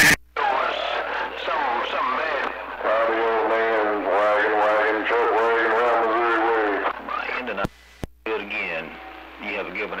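Voice coming in over a CB radio receiver, distorted and unintelligible, with long wavering drawn-out tones in the middle. Near the end the signal drops out with two sharp clicks of transmitters keying, and another station's voice comes in.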